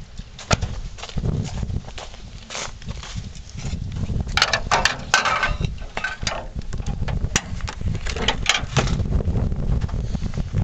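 Footsteps crunching through snow and dead leaves, with irregular sharp clicks and knocks, a cluster of them about halfway through, over a low rumble.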